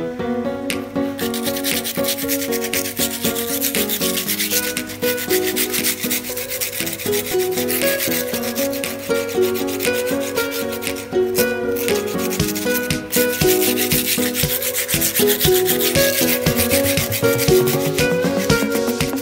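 A sanding pad rubbing and scraping over the rough surface of a cement flower pot, starting about a second in and continuing steadily, over background guitar music.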